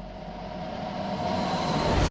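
A swelling whoosh sound effect used as a video transition: noisy and rising steadily in loudness, then cutting off suddenly at the end.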